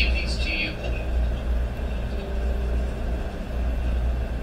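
A steady low rumble, with a brief snatch of a voice at the very start.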